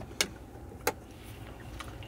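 Two sharp plastic clicks, well apart, as the hinged flip-up covers of a pickup's centre-console power outlets are snapped shut by hand, over a low steady cabin hum.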